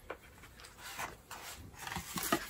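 A stiff cardboard box lid being lifted off and a fabric dust bag pulled out: soft rubbing and scraping, with a small click just after the start and rustling that swells near the end.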